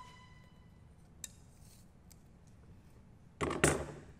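Metal hand tools handled on a workbench: a short metallic ring at the start, a faint click about a second in, then a louder clatter with two knocks near the end.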